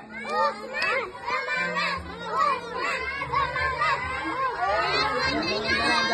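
Many children's voices shouting and chattering over one another throughout, with music playing underneath.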